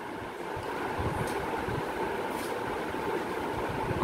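Steady background noise with a faint steady hum, and no distinct sound standing out.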